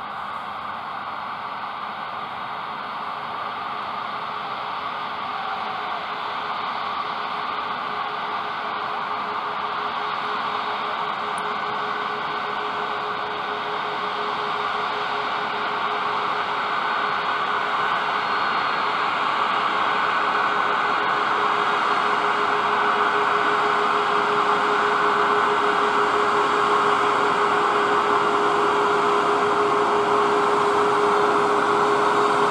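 Boeing 737-8's CFM LEAP-1B jet engines running at taxi power: a steady rushing whine with a humming tone underneath, growing gradually louder as the jet taxis closer.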